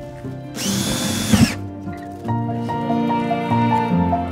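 Cordless drill running in one short burst of about a second, spinning up, boring and winding down, drilling into a foil-wrapped plastic box. Background music follows.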